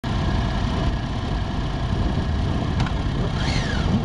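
Sport-bike engines running in a pack, a dense steady rumble with wind noise on an onboard microphone; near the end an engine revs up and back down.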